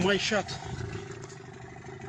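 A man's brief exclamation, then an engine running with a steady drone and noise on a phone recording.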